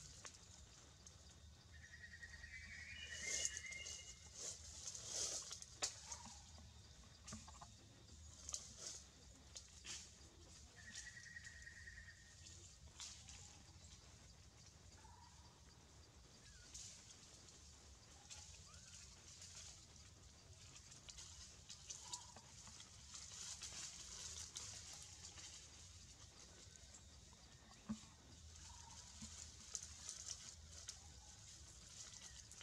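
Two faint, short, high-pitched cries from a newborn macaque, one about two seconds in and another around eleven seconds in, with scattered soft clicks and rustles between them.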